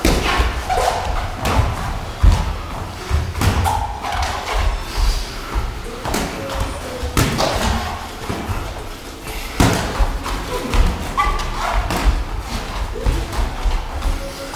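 Boxing sparring heard at close range: irregular thuds and slaps of gloved punches landing, mixed with footwork on the ring canvas, a dozen or so strikes at uneven intervals.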